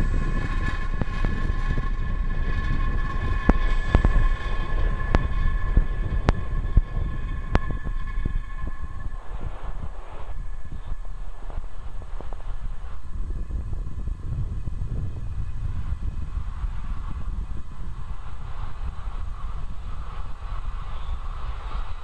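Falcon 9 first-stage Merlin 1D engines in flight during ascent: a loud, steady low rumble with sharp crackles over the first eight seconds. Two steady high tones sound over it and fade about ten seconds in.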